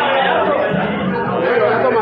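Indistinct chatter of several voices in a large room.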